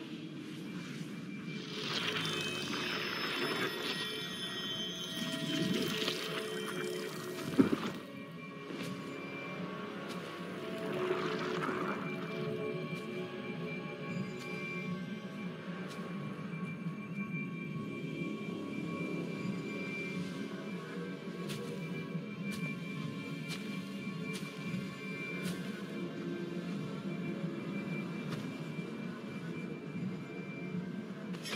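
Film score with steady held tones. In the first eight seconds it is layered with swirling, sweeping sci-fi sound effects of a glowing portal opening, ending in a sharp hit about seven and a half seconds in.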